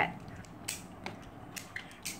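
A few faint, short clicks and taps from a Beyblade spinning top being handled, over a quiet room.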